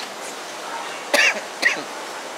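A man coughing twice, a longer cough then a short one, about a second in, over steady background hiss.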